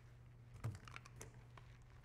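Small skincare product boxes and bottles being picked up and handled: a soft knock a little over half a second in, then a few light clicks, over a low steady hum.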